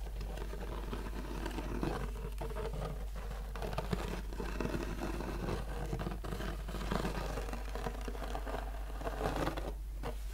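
Fingertips scratching and tapping the stiff braided straw of a boater hat, a steady run of small scratches.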